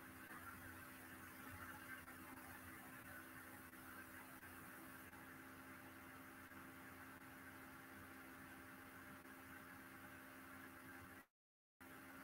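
Near silence: a faint, steady hum and hiss of room tone, which cuts out to complete silence twice, briefly, near the end.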